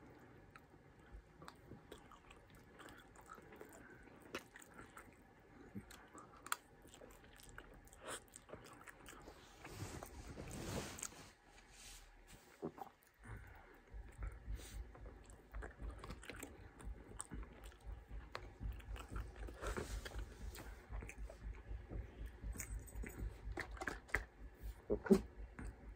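Faint, close-up chewing and biting of a takeout bowl of rice, beans and grilled chicken, with many small crunches and clicks scattered through it.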